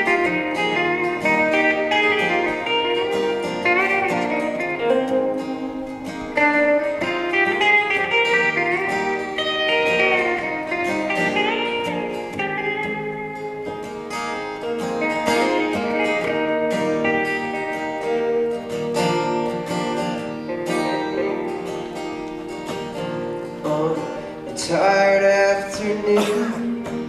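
Live instrumental break of a country-folk song: a steel-string acoustic guitar strummed under an electric guitar lead with bent, sliding notes. Near the end a voice comes in.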